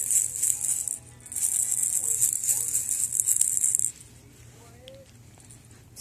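Plastic baby rattle shaken in two bouts of fast rattling, with a brief break about a second in; the rattling stops about four seconds in.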